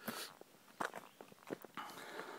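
Footsteps on a dirt forest trail, a few separate steps about two-thirds of a second apart.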